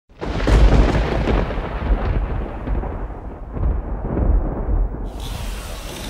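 Intro sound effect: a deep, rumbling boom like thunder that starts abruptly and slowly dies away. About five seconds in it gives way to a steady outdoor hiss.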